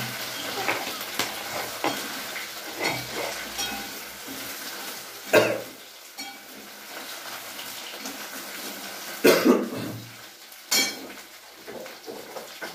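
Scattered light knocks and clatter of small hard objects, with a louder sharp knock about halfway through and two more near the end.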